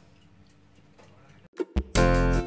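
Near silence: faint room tone, then two short clicks near the end.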